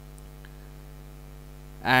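Steady electrical mains hum with its evenly spaced overtones, picked up in the microphone line, until a man's voice begins near the end.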